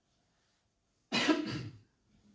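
A person coughs once, a short, loud cough about a second in after a silent pause.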